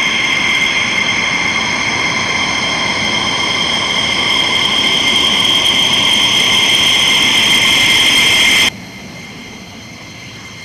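F-15E Strike Eagle's twin jet engines whining at taxi power: a loud, steady high whine over a rush of engine noise that grows slightly louder. About a second before the end the sound drops suddenly to a quieter rush.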